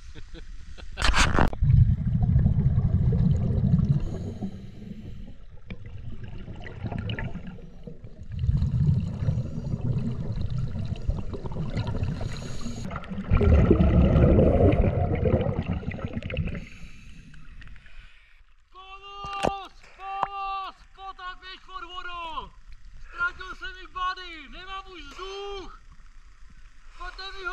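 Scuba diver breathing underwater: loud surges of low rumbling exhaust bubbles from the regulator. In the last third these give way to a run of short pitched sounds, each rising and falling, repeated about twice a second.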